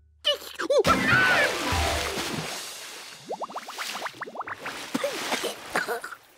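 Cartoon splash as a monkey drops into a pond: a sudden loud splash, then a long washing fade of water noise. A quick run of short rising blips follows, and near the end the monkey sputters.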